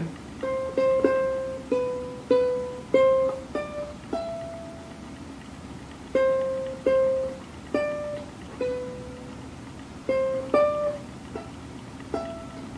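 A 21-inch ukulele played as a slow melody of single plucked notes, one at a time, each ringing briefly and fading, with short pauses between phrases.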